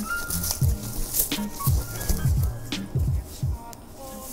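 Crinkly rustling of a thin white wrapping sleeve as a ukulele is pulled out of it by hand, with background music carrying a regular low beat and short high notes.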